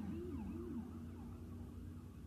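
A distant siren with a fast rising-and-falling wail that settles into a steady held tone about a second in.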